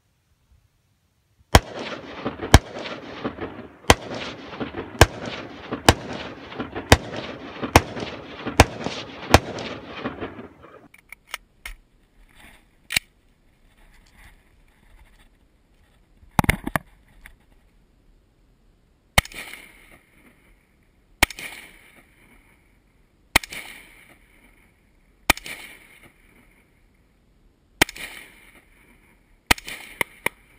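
Rifle gunfire in open desert. First comes a rapid string of about a dozen shots, each rolling into a long echo off the surrounding hills. After a pause come single shots fired close to the microphone, about one every two seconds, each with a short ringing tail.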